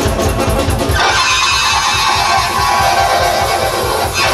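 Live folk-style band music led by a chromatic button accordion, with keyboard behind it. About a second in, the bass and beat drop back and a fast, dense run in the high register takes over.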